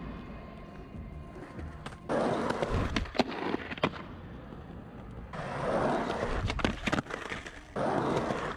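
Skateboard wheels rolling on rough tarmac, with sharp clacks from the board. The rolling comes in three runs: it starts suddenly about two seconds in, again about five and a half seconds in, and once more near the end.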